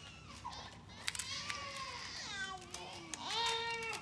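A small child's high-pitched, wordless voice, wavering cries or coos in a hospital ward. One call slides down in pitch midway, and a held note comes near the end.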